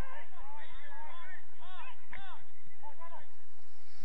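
Footballers' shouts and calls across the pitch, heard from a distance: many short, overlapping calls rising and falling in pitch.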